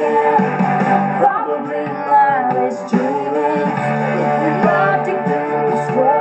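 Music: a guitar-backed pop ballad with a sung melody line gliding over sustained chords.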